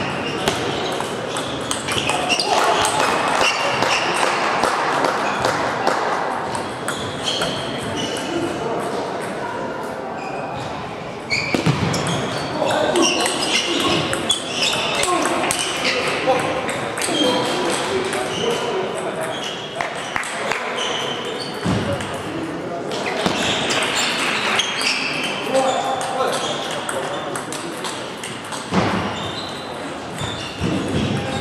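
Table tennis ball struck by paddles and bouncing on the table in rallies, a string of sharp clicks, over indistinct voices.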